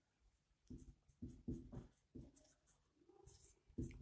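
Marker pen writing on a whiteboard: a run of short, faint scratching strokes as letters are written, with a few pauses between them.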